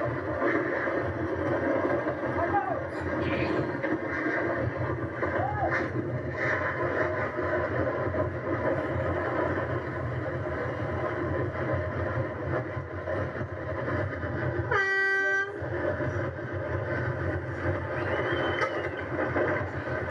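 Onboard sound of a carrilana, a wooden gravity kart, running downhill at speed, heard through a TV speaker: a steady rattling rumble of its wheels on the asphalt. About fifteen seconds in, a single horn blast sounds for under a second.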